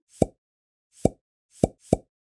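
Four short low knocks, the first two about a second apart and the last two close together.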